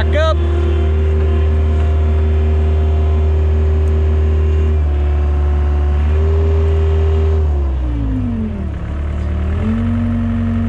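A John Deere 675B skid steer's engine, heard from the operator's seat, running at a steady speed. About three-quarters of the way in, its pitch sags, then it settles to a lower steady speed.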